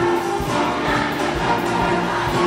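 Massed children's choir singing with a student orchestra, held notes over a steady drum beat of about three to four strokes a second.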